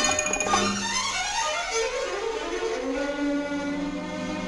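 Orchestral interlude of a 1960s Spanish operetta song, between sung lines, with violins carrying a melody that rises and falls.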